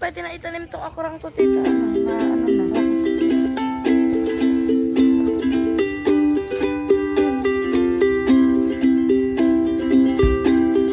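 Background music: a bright plucked-string tune of quick picked notes, getting louder and fuller about a second and a half in.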